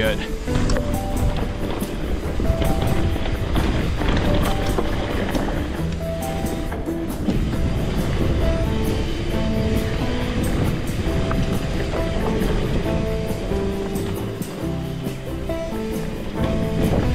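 Background music with a steady run of melody notes throughout.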